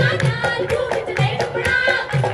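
Punjabi folk music for a giddha dance: singing over a hand drum that keeps a steady beat of about four strokes a second, with deeper strokes on every other beat.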